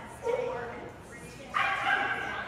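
A Brittany barking during an agility run, with the handler calling out short commands.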